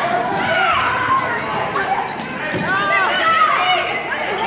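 Sounds of a basketball game in a school gym: the ball bouncing on the hardwood floor, with players and spectators calling out throughout.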